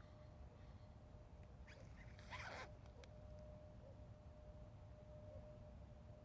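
Near silence with a faint steady hum, broken once about two seconds in by a short hissing rustle lasting under a second.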